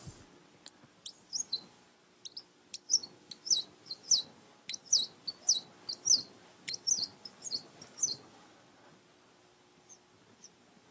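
Marker squeaking on a whiteboard as a calculation is written out: a quick, uneven run of short high squeaks, beginning about a second in and stopping near the end.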